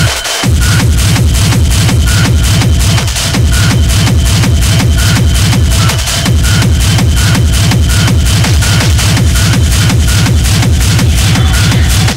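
Schranz-style hard techno DJ mix: a loud, fast, driving kick-drum beat with a steady high tone and short repeating blips over it, and a short break in the bass just at the start.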